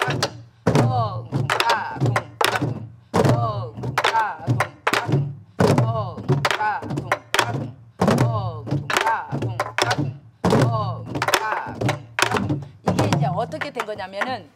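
Many sori-buk barrel drums are struck together, with palm strokes on the leather heads and stick strokes on the wooden shell, repeating a short drum pattern. Voices chant the drum syllables along with the strokes.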